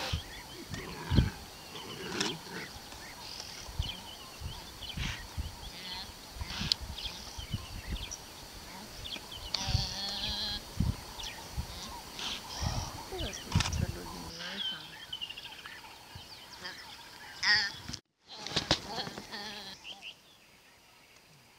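An impala fawn bleating in short, wavering cries while a leopard seizes it, with people's low voices in the background.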